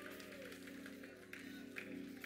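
Faint background music of soft, sustained chords held steadily under a pause in the preaching.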